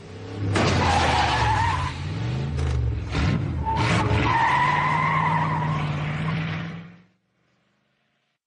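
A car engine revving up and down with tyres squealing, ending abruptly about seven seconds in.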